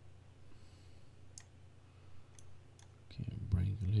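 A few faint computer mouse clicks, spaced about a second apart, over a low steady hum, as a curve is edited in 3D software. A man's voice starts near the end.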